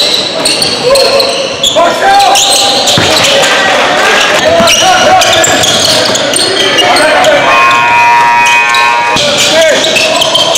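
Sound of a basketball game in a gym: a ball bouncing on the hardwood court amid voices of players and spectators. About three-quarters of the way through, a steady pitched tone sounds for nearly two seconds.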